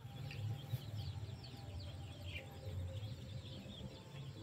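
Many short, high chirps, quick and overlapping, from small animals calling at night, over a low steady hum.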